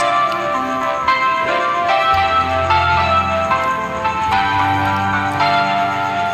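Instrumental intro of a karaoke backing track: a run of struck notes over held chords, with a low bass note coming in about two seconds in.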